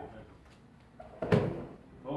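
A student thrown onto a folding gym mat lands in a breakfall slap-out: one loud thud and slap of body and arm against the mat, a little past halfway through.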